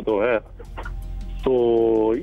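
A man's voice speaking Urdu: a short phrase, a brief pause, then a long drawn-out vowel held on one steady pitch, a hesitation while he searches for words.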